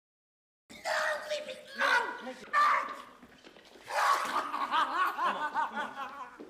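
Men's voices from a film's dialogue track, coming in after a short silence, with a voice making quick, repeated pulses near the end, like laughing or sobbing.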